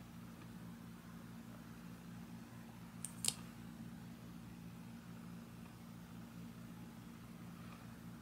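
Faint room tone with a steady low electrical hum, and two quick small clicks about three seconds in.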